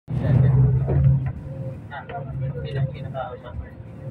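Motor vehicle engine and road noise while riding along: a steady low hum, loudest for about the first second, then quieter. People talk over it.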